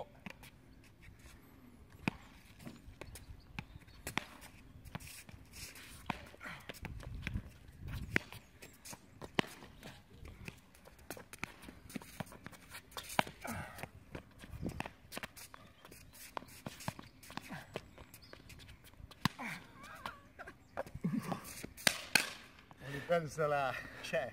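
Irregular sharp knocks of a ball being struck and bouncing during a rally, mixed with footsteps on the court.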